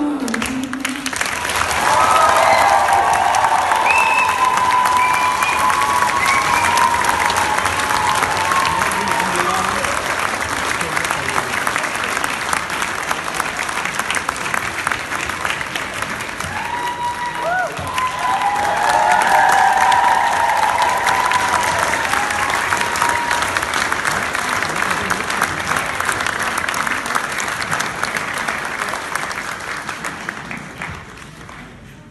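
Audience applauding, with voices shouting and cheering over the clapping. It swells about two seconds in and again about two-thirds of the way through, then dies away near the end.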